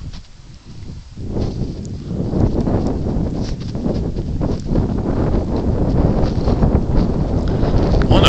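Wind buffeting a phone's microphone outdoors: an uneven low rumble that builds about a second in and keeps on, with a few faint scuffs over it.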